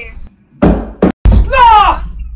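Two loud thumps about a second in, like objects knocked or dropped on a floor, followed near the end by a short, high cry whose pitch falls.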